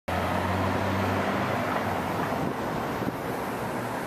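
Street traffic: a car's engine hum that fades after about a second, then steady traffic noise.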